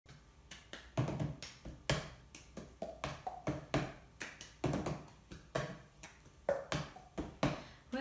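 Cup-song rhythm played by hand: claps alternating with a cup being tapped, slapped and knocked down on a tabletop, in a repeating pattern with a strong hit about once a second and lighter strokes between.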